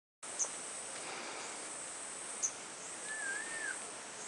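Outdoor natural ambience: a steady hiss with a faint high insect-like whine, two short sharp high chirps and a brief warbling whistled call, typical of small birds calling.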